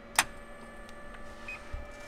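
A single sharp click of a rocker switch on a light aircraft's instrument panel, followed by a faint steady electronic whine of several thin tones from the panel's electronics, with a brief higher beep near the end.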